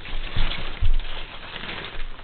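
Plastic sheeting rustling and crinkling as a bearded dragon scrambles across it and starts up the wall, with two dull low thumps about half a second apart.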